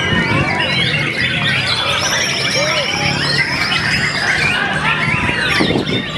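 White-rumped shama (murai batu) singing amid many other competing songbirds: a dense overlap of whistles, chirps and arched notes, with one long held high whistle in the middle.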